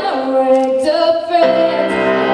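Young woman singing a slow ballad live into a microphone, holding long notes, to her own piano accompaniment. The piano thins out under the held notes and a new chord comes in about one and a half seconds in.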